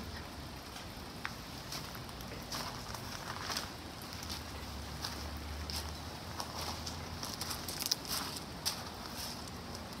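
Footsteps crunching on loose gravel, an uneven step every half second or so.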